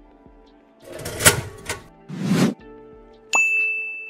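Subscribe-button sound effects over background music: two whooshes, then a click and a bell ding that rings on.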